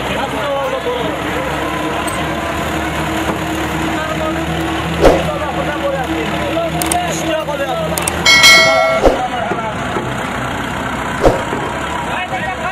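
A crowd of spectators talking and calling out, with a short vehicle horn honk lasting about half a second, about eight seconds in, and a few sharp knocks, the loudest about five seconds in.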